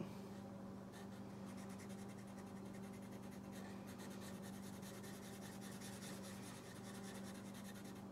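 Black Sharpie permanent marker scratching across textured watercolor paper in many quick short strokes as a figure is drawn and filled in, faint over a steady low hum.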